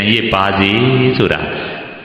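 A Buddhist monk's male voice preaching in Burmese, drawing out a phrase in a chant-like, sing-song intonation that falls and fades near the end.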